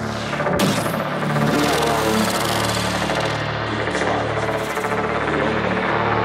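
Psychedelic trance music: a dense, layered electronic synth texture over low bass tones that dip in a steady pulse. About half a second in, a sweep passes and the deepest bass cuts out suddenly.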